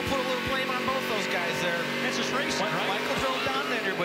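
Stock car V8 engine running at steady high revs at full speed on an oval, heard through an in-car camera, with a few short low thumps.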